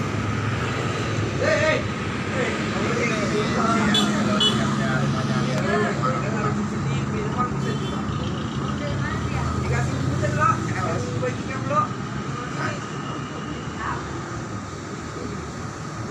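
Indistinct background talk from several people, carried over a steady low hum.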